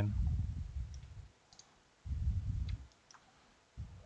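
A few faint computer mouse clicks, with low rumbling bursts of noise: one at the start, one about two seconds in, and a short one near the end.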